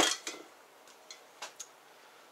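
A sharp click of hard objects knocking together, then a few faint, scattered ticks.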